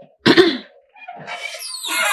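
A woman coughs once, short and sharp, about a quarter of a second in.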